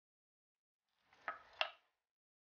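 Two light, sharp clicks about a third of a second apart, with a faint rustle, as a PVC pipe ring is handled against a wooden mould.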